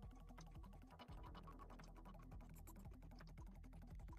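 Faint background music at a very low level, with quiet clicks like keys on a computer keyboard.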